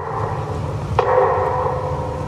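A bell tolling for a minute of silence. A sharp strike about a second in rings on at a steady pitch over a low steady hum.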